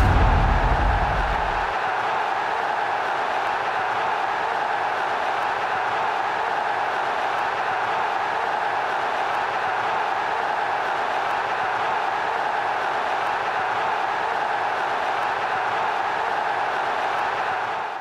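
A deep boom that dies away over the first two seconds, then the steady roar of a stadium crowd.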